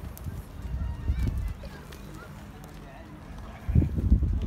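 Beni Guil sheep in a crowded pen, one giving a long low bleat about two seconds in, over the low thumps and shuffling of the flock. A loud voice cuts in near the end.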